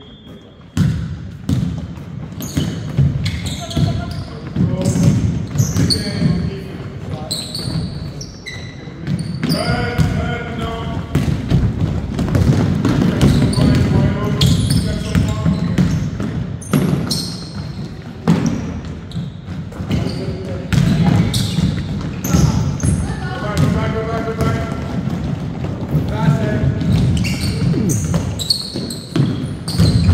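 Basketball game on a hardwood gym court: a ball bouncing on the floor in repeated dribbles, sneakers squeaking in short high chirps, and voices calling out, all ringing in the hall.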